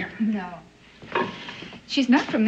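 A spoon stirring and scraping in a dish in a few short strokes, with a brief low voice sound near the start.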